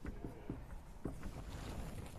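A whiteboard marker finishing a few short strokes on a whiteboard, heard as soft scratches and taps, then a few soft knocks over a faint low room rumble.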